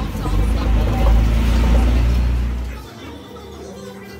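Heavy low rumble on a phone microphone, with music and indistinct voices over it; the rumble drops away suddenly about three seconds in, leaving quieter music and room sound.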